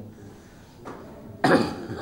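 A man coughs once, suddenly and loudly, about one and a half seconds in, after a quiet stretch of room sound.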